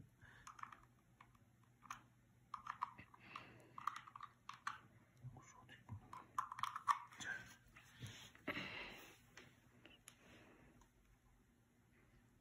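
Faint clicks and rustles of a charging cable being handled and its plug pushed into a handheld power bank, with a longer rustle about eight and a half seconds in.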